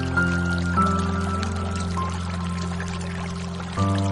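Slow, soft piano music: held low chords with a few single melody notes above, moving to a new chord about a second in. It plays over a steady sound of running, pouring water.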